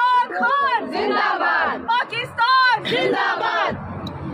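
A group of women chanting protest slogans in loud, high-pitched shouts, a lead voice calling out short phrases that the group takes up. The chanting breaks off shortly before the end, leaving a low steady traffic hum.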